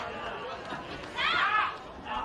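A high-pitched voice shouts briefly, about a second in, over the low chatter of a wrestling-arena crowd.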